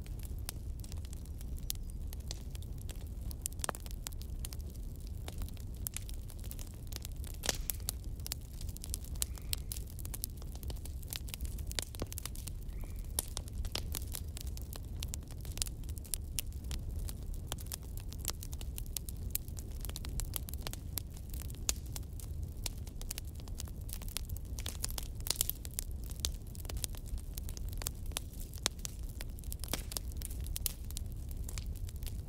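Wood fire burning in a fireplace: a steady low rumble from the flames, with frequent small irregular crackles and pops from the burning logs.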